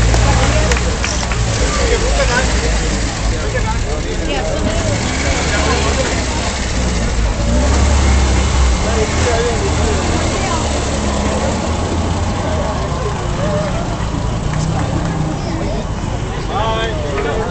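Vintage car engines running at low speed as the cars roll past one after another, a steady low rumble that swells about halfway through, with crowd chatter over it.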